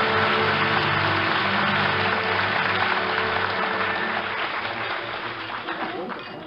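Studio orchestra playing a short bridge between scenes while a studio audience applauds. Both fade down over the last couple of seconds.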